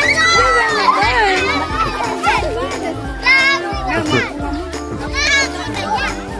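Children shouting and squealing in high voices, with loud calls near the start, about three seconds in and again about five seconds in, over background music.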